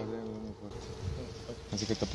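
A flying insect buzzing: a steady hum that fades out within the first second, followed by short broken buzzes near the end.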